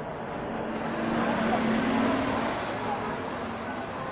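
A city bus drives past close by, its engine drone swelling to a peak about two seconds in and fading as it moves off, over background chatter from a crowd.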